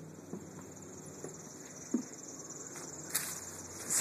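Soft footsteps on grass, a few faint thuds about a second apart with the clearest about two seconds in, over a steady high hiss.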